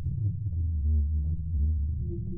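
Sonified radio and plasma-wave data from the Juno spacecraft's Waves instrument, recorded during the Europa flyby and turned into sound through a spectrogram. It is a low, noisy rumble with short wavering tones over it, and a steadier higher tone enters near the end.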